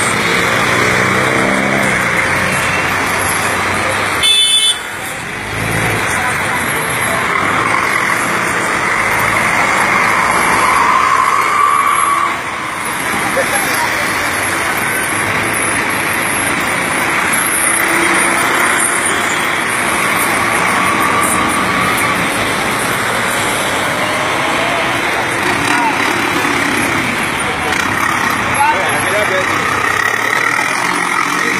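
Loud, steady street din of minibus engines and a crowd of many voices talking and calling at once, with a short sharp noise about four and a half seconds in.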